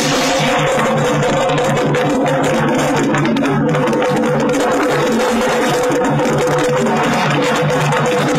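Loud music with a steady held note and a repeating low beat running through it.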